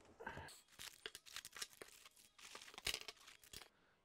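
Quiet rustling and crinkling of plastic-bagged parts and packaging being handled and unpacked from a box, with many short light clicks and taps.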